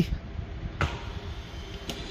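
Low, steady outdoor background rumble in a pause between a man's sentences, with a brief faint sound about a second in.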